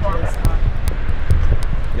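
The end of a spoken line, then a steady low outdoor rumble with a few soft knocks.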